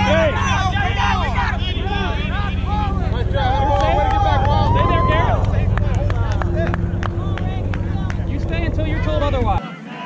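Several players calling and shouting across an open kickball field, with one long drawn-out call around the middle. Underneath runs a steady low wind rumble on the microphone that cuts off suddenly near the end.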